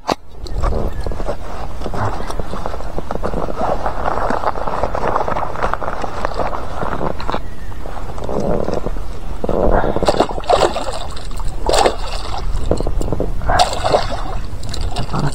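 Water sloshing and splashing as a hooked pike fights at the surface beside a float tube, with several sharper splashes in the last few seconds as the fish thrashes.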